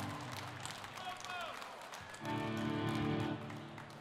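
Electric guitars and bass through stage amplifiers sounding a held chord for about a second near the middle, as a band sounds out between songs, with a weaker ringing tail near the start and a few short gliding tones.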